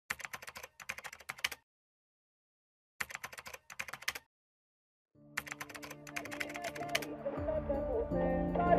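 Typing sound effect: three bursts of rapid key clicks, each a second or so long, with silence between. Music fades in during the third burst and grows louder toward the end.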